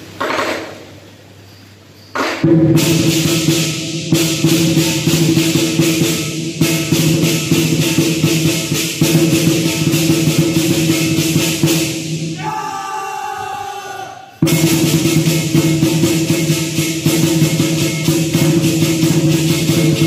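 Lion dance percussion band of a big drum, hand cymbals and a gong. A single ringing strike comes first, then about two seconds in the full band starts a loud, fast, dense beat. The beat thins out briefly about twelve seconds in, then crashes back in.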